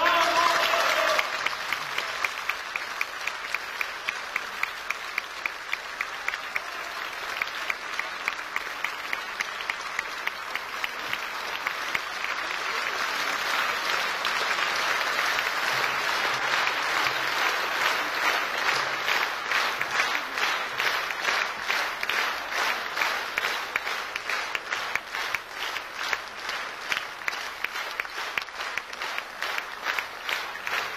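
Concert-hall audience applauding at the end of a sung orchestral piece, the last note ringing out as the applause starts. Sharp claps at a steady pace stand out above the applause, which swells toward the middle.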